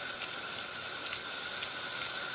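Steady hiss with a faint, steady high tone: a Piezotome ultrasonic surgical handpiece running with its saline spray, its tip in a bowl of saline.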